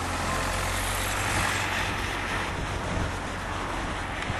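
Hino tour coach driving past close by: a low engine rumble with tyre and road noise that swells to a peak about a second and a half in and then eases off.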